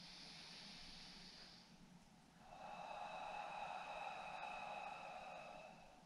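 Faint breathing from someone holding a deep stretch: a short hissing breath of about a second and a half, then a longer breath of about three seconds.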